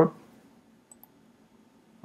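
A single faint computer-mouse click about a second in, against near-silent room tone, with the end of a spoken word at the very start.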